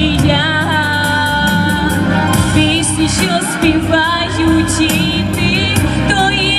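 A woman singing a pop-style song into a microphone, with a wavering vibrato on her held notes, over an amplified instrumental accompaniment with a bass line and a steady beat.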